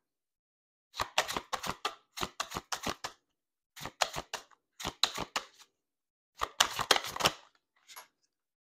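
A tarot deck being shuffled by hand: four short runs of crisp, rapid card clicks and slaps, with brief pauses between them.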